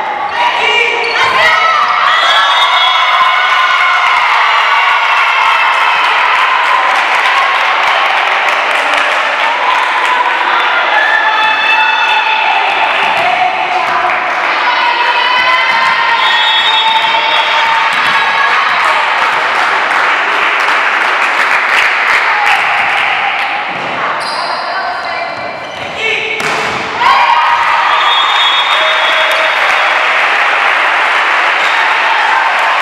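Volleyball strikes and ball bounces echoing in a sports hall, under a steady din of many voices shouting and calling.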